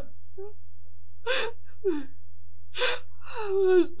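A woman crying in distress: a few sharp gasping sobs, then a long wail falling in pitch near the end, over a steady low hum.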